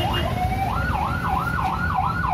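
Ambulance siren going by: a fast yelp of quick rising sweeps changes about half a second in to a slower up-and-down wail, about two to three cycles a second, over low street rumble.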